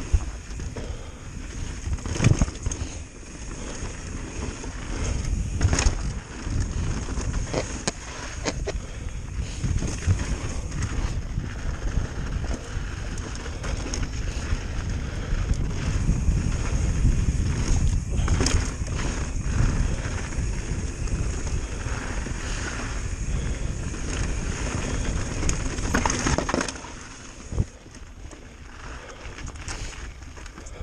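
Pivot Firebird full-suspension mountain bike riding fast down a rocky dirt trail: steady rumble of tyres on dirt and gravel and wind on the microphone, with frequent sharp knocks and rattles as the bike hits rocks and drops. It gets quieter a few seconds before the end.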